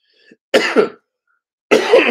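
A man coughing twice, two harsh bursts about a second apart, the second with his hand over his mouth.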